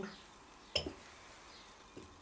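A single short clink about three quarters of a second in, as the china plate is nudged into position on the bench-drill table under the stationary bit; otherwise quiet room tone.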